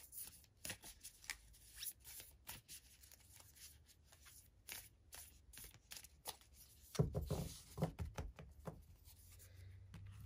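A deck of heart-shaped oracle cards being shuffled by hand: quick papery flicks for the first few seconds, sparser in the middle, then heavier handling with soft thuds of the deck on the cloth-covered table about seven to nine seconds in.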